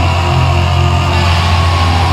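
Loud hardcore punk music: heavily distorted guitars and bass holding low, sustained chords.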